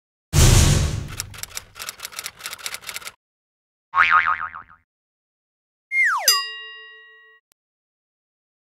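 Intro logo sound effects: a loud rush of noise followed by a string of uneven clicks lasting about three seconds, then a short wobbling boing. Near the end, a quick falling swoop lands on a ringing chime that fades over about a second.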